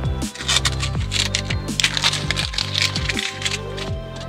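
Background music with steady low notes and falling bass glides. Over it, a quick run of sharp clicks and rattles for about two and a half seconds in the middle.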